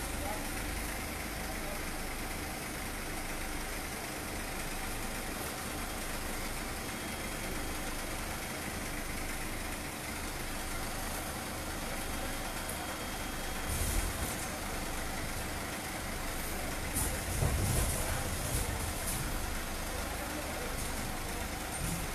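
A vehicle engine idling steadily close by, with voices in the background. A few short bumps and rustles come in the second half.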